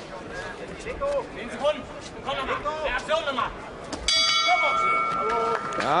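Boxing ring bell rings out about four seconds in and keeps ringing for about two seconds, signalling the end of the round.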